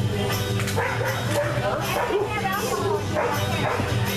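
A dog barking several times, over people talking and music playing in the background.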